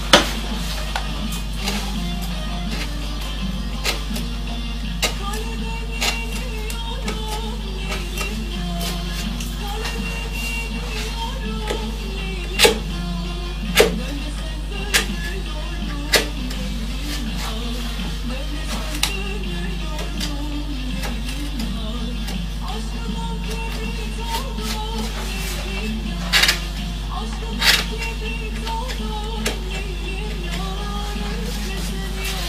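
Background music with a steady low hum, broken by about a dozen sharp, irregular clicks as a hand-pushed carving gouge cuts into wood and snaps off chips.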